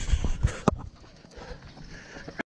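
A runner's footsteps on the asphalt road, mixed with knocks from the handheld camera being swung around; the loudest thuds fall in the first second, then it goes quieter.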